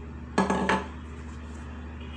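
Metal ladle clanking against metal cookware: two quick ringing knocks close together, about half a second in.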